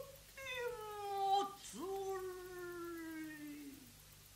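Female gidayū (jōruri) chanter singing long drawn-out notes that sag slowly in pitch. A new phrase enters a little before two seconds in with a quick upward scoop, and the voice dies away near the end.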